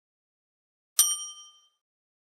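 A single bright bell ding, a sound effect, about a second in, ringing with several clear high tones and fading out within under a second. It is the notification-bell chime of a subscribe-button animation, the bell icon being clicked.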